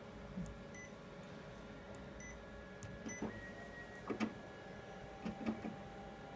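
Kyocera TASKalfa 5551ci multifunction copier scanning a document: a faint steady running hum with a few short clicks and knocks about three, four and five and a half seconds in.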